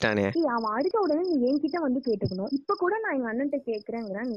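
Cricket chirping in a steady series of short, high pulses, about four or five a second, pausing briefly near three seconds in.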